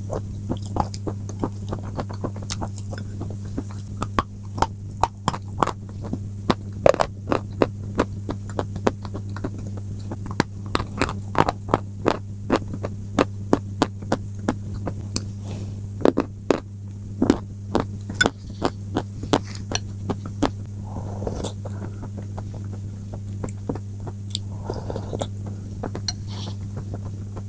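Close-up crunching as crumbly white chunks are bitten and chewed: many sharp, irregular crackles that thin out over the last few seconds. A steady low electrical hum runs underneath.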